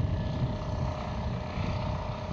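Small farm tractor pulling a loaded trailer along a road, its engine running steadily with a low rumble.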